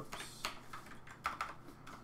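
Computer keyboard keystrokes: about half a dozen separate, unevenly spaced key taps.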